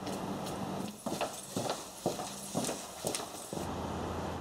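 Footsteps of a small group of people climbing stone stairs: hard, regular steps about two a second over a low steady hum.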